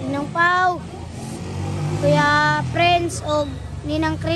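A boy's voice in a few long, drawn-out syllables, over a steady low hum.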